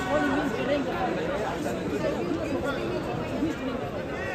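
Several people talking at once: overlapping, indistinct chatter from onlookers in a large sports hall.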